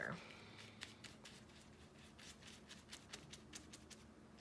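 Faint, irregular scratchy strokes of a small paintbrush dabbing and brushing wet paint onto a paper plate.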